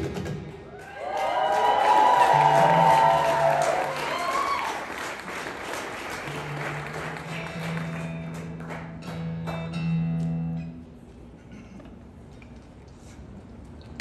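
Crowd applauding and cheering with whoops as an acoustic song ends, a low steady note sounding beneath it for a while. The applause dies down after about eleven seconds to a few scattered claps.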